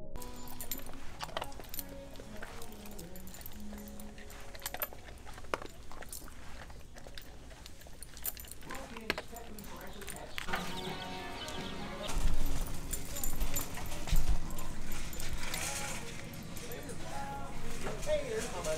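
Shop ambience: music and voices playing in the background, with a dog's claws clicking on a bare concrete floor as it walks on its leash. A few louder low thumps come just past the middle.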